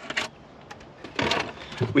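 Handling noise from an RC buggy's plastic body shell as it is taken off the chassis: a few light clicks, then a short rustling scrape about a second in.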